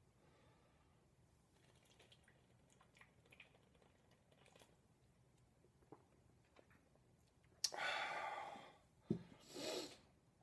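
Mostly quiet, with faint small clicks, then a man's loud, breathy exhale lasting about a second, three-quarters of the way through. A click and a second, shorter breath follow near the end.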